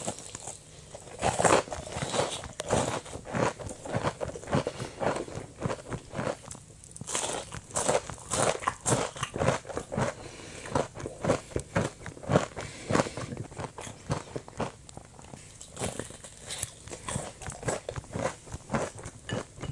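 Close-up crunching and chewing of crispy deep-fried pork loin skewer (kushikatsu) breading. Sharp crackling bites come about two to three a second along with wet mouth sounds, with a short lull about six seconds in.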